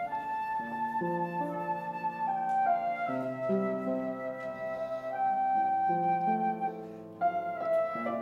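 Flute playing a slow melody of held notes over piano accompaniment: the instrumental introduction to a hymn, before the choir comes in.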